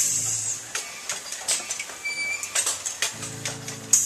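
A pop-up haunt prop's mechanism lifting a figure out of a tomb, with bursts of air hiss and clattering clicks that start suddenly and come back louder near the end. A low music drone returns about three seconds in.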